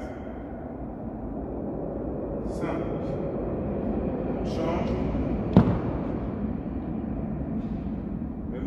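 Steady room noise of a large gym hall with a few short snatches of a man's voice, and one sharp knock a little past the middle.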